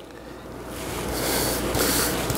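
Bristles of a palm wave brush scraping across short, coarse hair on the crown, a scratchy swish that starts about half a second in and grows louder.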